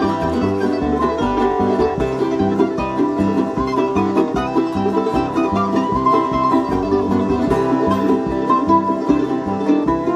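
Live bluegrass band playing an instrumental break, with banjo and guitar picking over a steady bass line.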